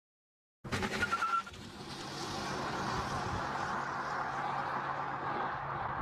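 Intro sound effect: a few short noisy bursts, then a steady rushing, vehicle-like noise that builds over about a second and holds.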